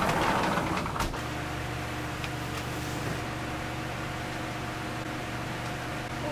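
A sliding glass door rolling open for about a second, then an electric fan running with a steady hum.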